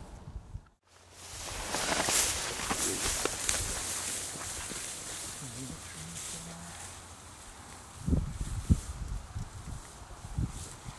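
Footsteps swishing through tall dry grass, a dense crackly rustle loudest in the first few seconds after a brief drop-out, then softer, with a few low thumps near the end.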